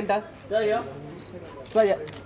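Press photographers calling out in short shouts, with camera shutters clicking between the calls.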